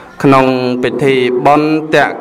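A Buddhist monk's voice chanting, drawing out each syllable as a long held note on a nearly level pitch, several notes in a row beginning just after the start.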